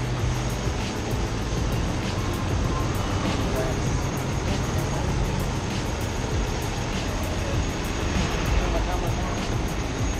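Small go-kart engines running steadily, a constant low drone.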